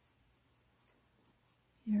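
Felt-tip marker drawing on paper: a few faint, scratchy strokes.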